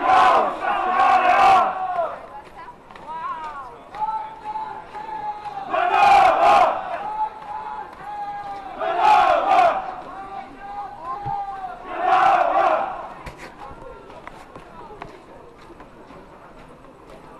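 A group of voices shouting together in four loud bursts, the marching chant or battle cry of a parading troop of costumed Roman soldiers with shields. A steady held tone sounds between the shouts.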